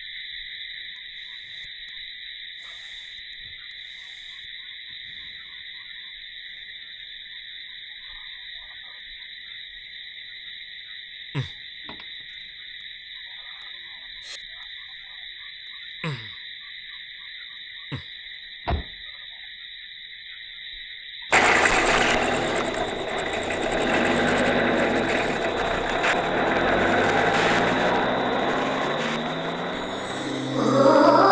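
Steady high-pitched drone of night insects, broken by a few short sharp sounds. About two-thirds of the way in, a truck engine starts with a sudden loud burst and runs.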